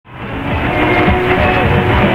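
Music heard over a distant AM medium-wave radio station on a receiver, its sound cut off above about 4 kHz, fading up from silence in the first half second.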